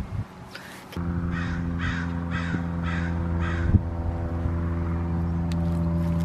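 A crow cawing five times, about two caws a second, over a steady machine hum of several held tones that starts abruptly about a second in and carries on.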